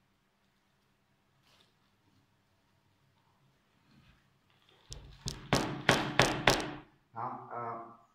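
A plastic plant pot being knocked and squeezed to free an orchid's root ball: after near silence, a quick run of about six sharp knocks and crackles over a second and a half, followed by a brief murmur of voice.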